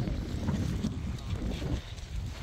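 Wind buffeting the microphone, an uneven low rush that rises and falls in gusts.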